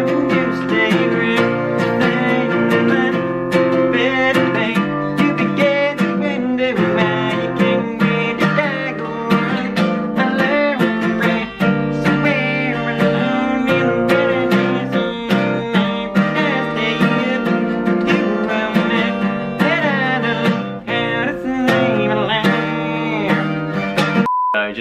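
Steel-string acoustic guitar strummed in a steady rhythm of chords, with a man singing along.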